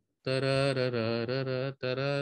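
A man's voice singing the repeating melodic motif on a long, slightly wavering held note, which breaks off briefly near the end before another sung note begins.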